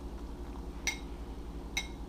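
Metal spoon clinking twice against a bowl as a chopped mushroom-and-chili mix is stirred, short bright knocks with a brief ring, over a low steady hum.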